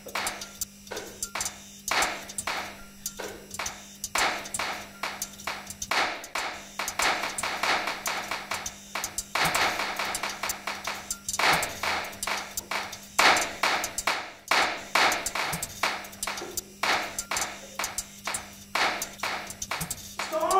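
A rapid, irregular run of sharp taps and clicks, several a second, some ringing briefly, over a steady low hum.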